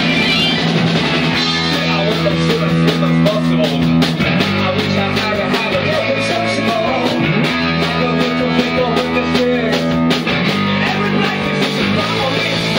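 Live rock band playing: electric guitar and keyboard over a steady beat, loud throughout.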